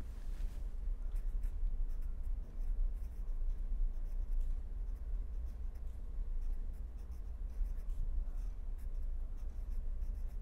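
Pen writing on paper: a run of short scratching strokes as words are written out, over a steady low hum.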